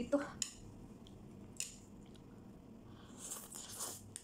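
A few light clicks of chopsticks against a plate, then a soft, hissy slurp of spicy instant noodles being sucked into the mouth near the end.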